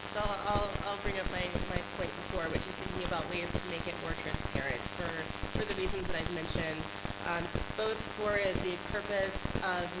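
Speech, heard through a dense, steady crackle of clicks.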